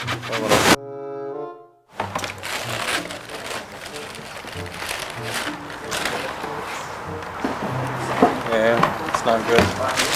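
A short musical tone, dropped in as an edited sound effect, plays alone about a second in and fades out after about a second. After it come crinkling tissue paper and handling of shoe boxes, with indistinct voices near the end.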